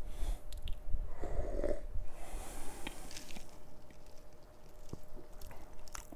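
A man sipping beer from a stemmed glass: soft slurps, swallows and small mouth and lip sounds, no speech.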